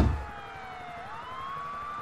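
An emergency siren wailing in the background. Its pitch slides slowly down, then swings back up about a second in.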